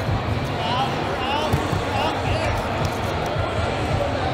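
Busy indoor sports-hall din: overlapping voices of spectators and coaches over a low rumble, with repeated dull thuds and several short, high rubber-shoe squeaks on the floor or mat.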